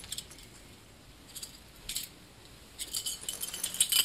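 Light metallic jingling and clinking: a couple of separate clinks, then a denser run of jingling in the last second or so.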